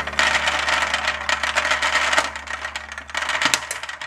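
Many small balls pouring out of a glass jar, clattering and rattling continuously onto a clear plastic tray.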